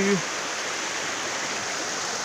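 Swollen river in spate after heavy rain: fast, muddy water rushing and churning into whitewater, a steady, even rush.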